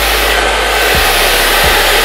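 Handheld hair dryer running steadily on its cold setting, blowing on freshly applied lace-wig glue to set it until it is no longer tacky.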